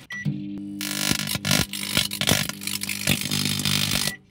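A microwave oven beeps once as it starts and its transformer hum comes in. Within a second, a CD held in a chainmail glove inside begins arcing: loud, continuous crackling of sparks that stops suddenly at the end.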